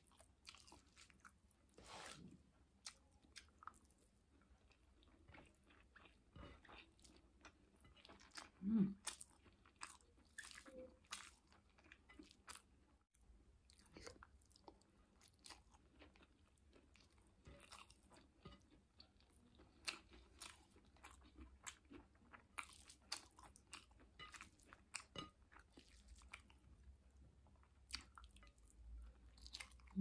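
Faint close-miked chewing of rice and sautéed vegetables eaten by hand, with many short mouth clicks. A brief low hum about nine seconds in.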